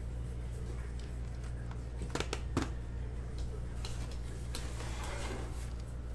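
A stack of Bowman baseball cards flipped through and slid against one another by hand. There are a few short card snaps about two seconds in and a stretch of rustling after four seconds, over a steady low hum.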